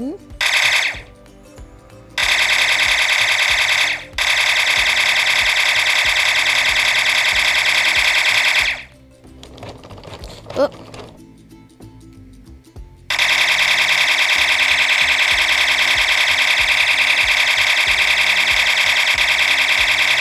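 Electronic rapid-fire sound effect of the DJI RoboMaster S1's simulated laser blaster, running in two long stretches of several seconds each that start and stop abruptly, with a break of a few seconds between them.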